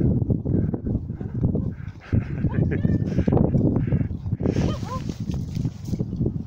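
Footsteps crunching in snow in an uneven walking rhythm, with rustle and handling noise from a hand-held phone. A few brief high squeaks come in about halfway through and again near the end.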